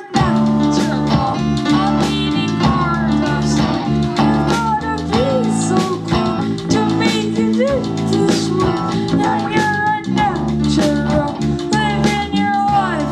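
Live rock band playing an instrumental passage with electric guitar, drum kit and saxophone, the full band coming in together sharply right at the start.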